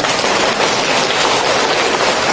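Audience applauding, a dense, even patter of many hands clapping.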